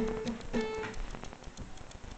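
Acoustic guitar: two short plucked notes in the first second, each ringing briefly and dying away, then fading toward quiet with a few small clicks.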